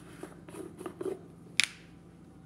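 Onion powder jar being handled over a bowl: a few soft taps, then one sharp click about one and a half seconds in.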